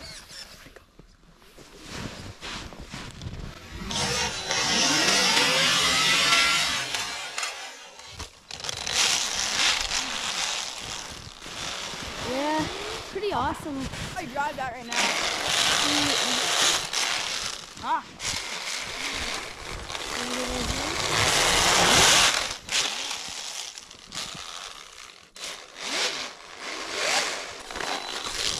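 A 3D-printed Alpha 6 RC snowmobile driven in bursts through snow: its electric motor and track run hard for two or three seconds at a time, four times, with short pauses between.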